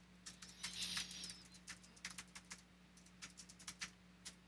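Typing on a computer keyboard: a quick, irregular run of faint key clicks.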